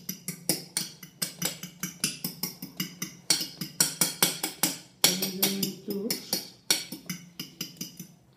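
A spoon beating eggs in a ceramic bowl: quick, even clinks of the spoon against the bowl, about five strokes a second, as the mixture is beaten until smooth.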